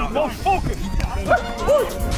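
People shouting short, excited "Oh!" cries in quick succession, about six in two seconds, over background music with a thumping beat.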